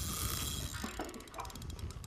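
Small Shimano spinning reel clicking in a fast run of even ticks, starting about halfway through, as a hooked snapper is played on the line.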